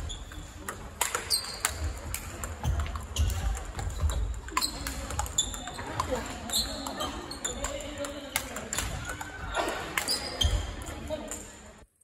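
Large-ball table tennis rally: a long run of sharp clicks as the ball is struck by the bats and bounces on the table, roughly one to two a second, over background voices. The sound cuts off suddenly near the end.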